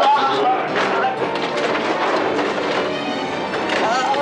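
Dramatic background music with men's raised, shouting voices over it, loudest near the start and again near the end.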